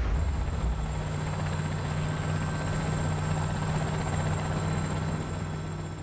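Helicopter engine and rotor noise heard from inside the cabin: a steady low drone with a faint high whine.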